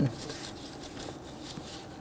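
Faint rubbing and handling noise as a gloved hand pushes a rubber hose's quick-connect end onto the port of a vapor canister purge solenoid valve.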